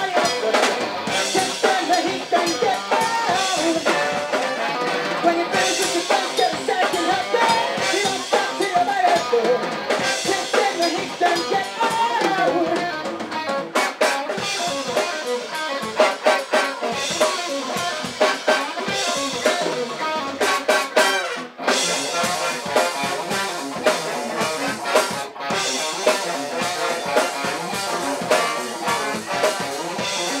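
Live funk rock band playing an instrumental passage: drum kit with rimshots, electric guitar, bass guitar and trombone. The band stops for a split second about two-thirds of the way through before carrying on.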